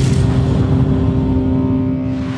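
Trailer sound design under a title reveal: a loud, low sustained rumbling drone holding several steady tones, with a swish right at the start.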